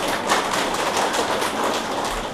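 A large audience applauding: a dense, steady patter of many hands clapping.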